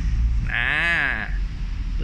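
A single drawn-out vocal sound from a man's voice, under a second long, its pitch rising and then falling, over a low background rumble.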